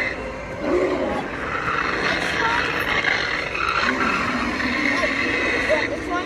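A boxed animated ghoul Halloween prop playing its try-me demo: a spooky voice and sound effects with wavering, gliding tones.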